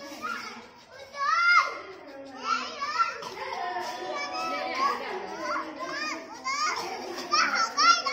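Young children's voices shouting and calling out while playing a game, several overlapping, with high rising calls. The loudest shouts come about a second and a half in and again near the end.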